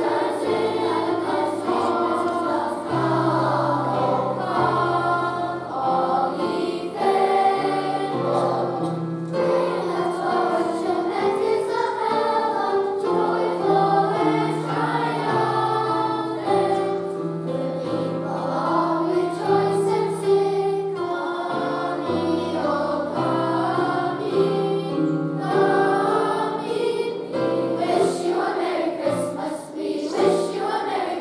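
Children's choir singing a song in parts, with sustained low keyboard accompaniment notes underneath.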